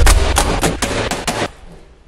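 Corrugated cardboard shipping box being ripped open by hand: a heavy thump at the start, then a quick run of sharp tearing rips for about a second and a half before they stop.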